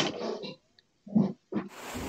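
A boy's short non-word vocal sounds, a few brief grunt-like bursts and breaths with gaps between them. Near the end a steady hiss comes in.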